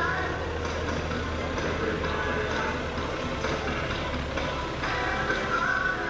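Music with singing over a public address system, mixed with the steady drone of a Piper J3 Cub's piston engine in flight. The low drone fades near the end.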